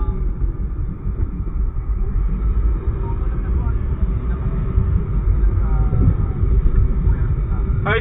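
Steady low rumble of a car's engine and tyres heard from inside the cabin while riding.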